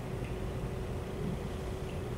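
Steady low rumble with a faint constant hum: the background noise of a room, without any distinct event.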